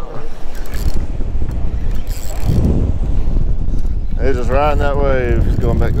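Wind buffeting the microphone, a steady low rumble that surges about halfway through, with a person's voice calling out near the end.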